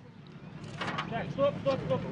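Faint voices of several people talking in the background over a steady low rumble, the voices growing a little in the second half.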